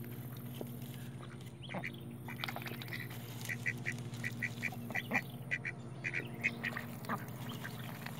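Mallard ducks giving short quacks in quick runs of two or three, starting about two seconds in, over a steady low hum.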